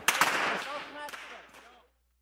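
A long rope whip cracking sharply once, then fainter cracks about a second later and again half a second after that, with people talking in the background. It all fades out to silence.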